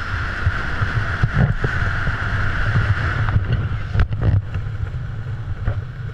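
Wind rushing over an action camera's microphone under an open parachute canopy: a steady low rumble with a hiss above it, and a few short knocks in the middle.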